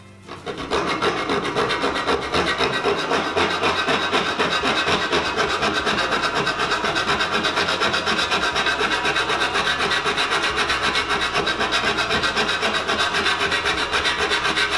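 Hand file rasping on the lip of light-gauge metal cable tray in quick, even back-and-forth strokes, starting about half a second in. The file is cutting a notch through the tray's lip so the piece can be bent back and forth and broken off.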